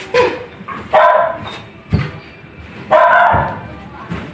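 Barking: three loud barks, one at the start, one about a second in and one about three seconds in.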